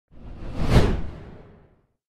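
Whoosh sound effect: a single rushing noise that swells quickly, peaks just under a second in, and fades away over the next second.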